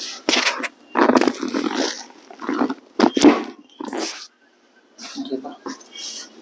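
A person's short, loud vocal sounds during a chiropractic lumbar twist adjustment, coming in about half a dozen bursts with a brief silence about four and a half seconds in.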